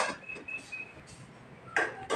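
A metal ladle knocking and scraping against a steel cooking pot as rice is dished out, a sharp clank at the start and another near the end, with a few faint short high chirps in between.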